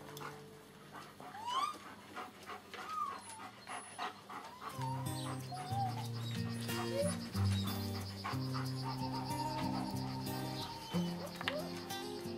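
Young puppies whining and yelping in short cries that slide up and down in pitch as they play, with background music coming in about five seconds in.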